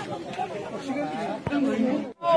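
Several people talking over one another in a group, with a sharp click about one and a half seconds in.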